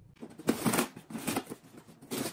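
Packing tape on a cardboard box being sliced open with a knife: an irregular run of scratching, scraping strokes against the cardboard.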